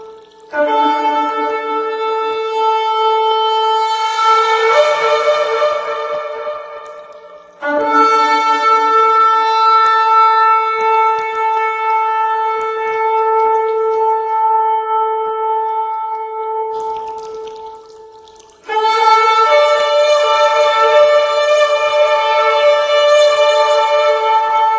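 Shofar blown in three long, steady-pitched blasts. They start about half a second in, about eight seconds in and about nineteen seconds in, and each of the first two tails off before the next begins.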